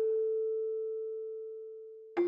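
A single struck, bell-like musical note in mallet-percussion style, a pure steady tone a little under 500 Hz with faint higher overtones, ringing and slowly dying away.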